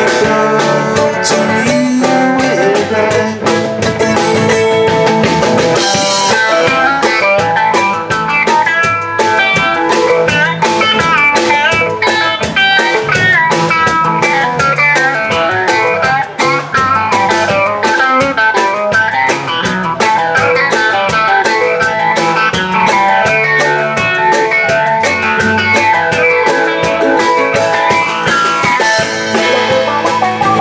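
Live bluegrass band playing an instrumental break: quick picked melody lines over electric guitar, mandolin, upright bass and a drum kit keeping a steady beat.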